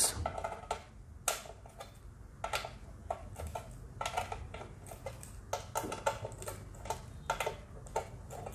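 Irregular small metallic clicks and ticks as a Leatherman Tread–style multitool bracelet's Phillips screwdriver link turns a small screw out of a box, the bracelet's metal links clinking with each twist.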